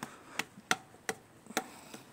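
Four short, sharp clicks at uneven spacing over a quiet background.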